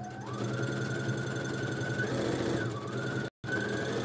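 Electric domestic sewing machine stitching a seam: the motor whine rises as it comes up to speed at the start, then runs steadily with a brief dip in speed a little past halfway. The sound cuts out for an instant just past three seconds.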